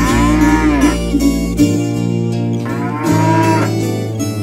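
A bull mooing twice, each long moo rising then falling in pitch, the second about three seconds in, over a plucked-string music backing.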